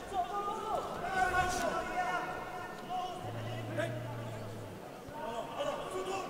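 Voices calling out in a fight arena, heard at a distance, with a couple of faint knocks and a brief low hum about halfway through.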